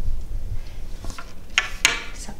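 Tall kitchen cupboard doors being swung shut, with two sharp knocks about a second and a half in, after a low rumble.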